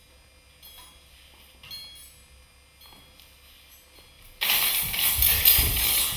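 Live stage percussion: soft, sparse metallic chime tinkles about once a second, then, about four and a half seconds in, a sudden loud jangling rattle of metal jingles with low thumps.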